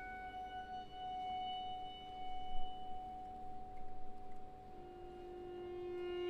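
A quiet, slow passage of a concerto for saxophone and orchestra: long sustained notes held over one another, a higher tone over lower ones, with the lower tone swelling louder near the end.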